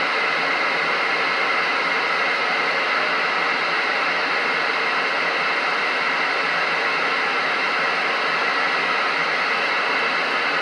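Steady static hiss from a Galaxy radio transceiver's speaker, with no voice coming through.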